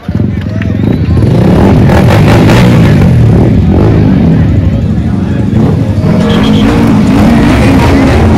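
Several motorcycles' engines revving together, loud and continuous, building up over the first second.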